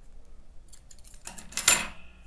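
Small metal crochet tools being handled, clinking and rattling briefly against the wooden tabletop, loudest a little past the middle.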